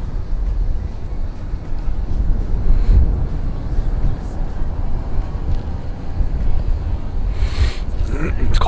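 Wind buffeting the camera microphone: a loud, irregular low rumble.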